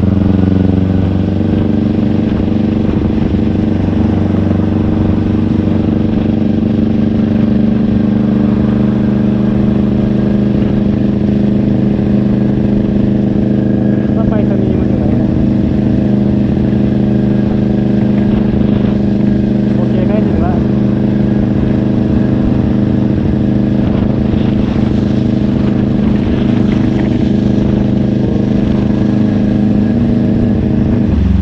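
Kawasaki Ninja 400 parallel-twin engine running at steady cruising revs, heard from on the bike. The note shifts and settles about a second in, then holds steady.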